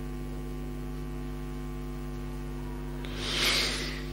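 Steady electrical mains hum in the recording, a low buzz made of several even tones. A brief soft hiss comes near the end.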